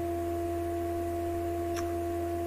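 A steady low hum with two steady higher tones layered over it, running unchanged throughout, and one faint short tick late on.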